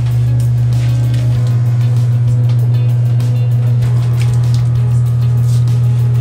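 Top-loading washing machine running with a loud, steady low hum that sets in right at the start, under background music.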